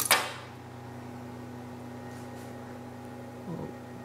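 A sharp clack at the start as the engraved popsicle stick is lifted out of the laser cutter's slatted bed and its small clamps, followed by a steady low hum.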